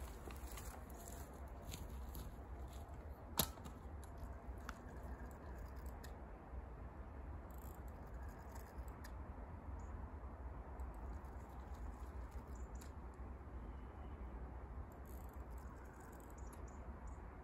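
Quiet outdoor ambience by a pond: a steady low rumble with scattered faint clicks, and one sharp click about three and a half seconds in.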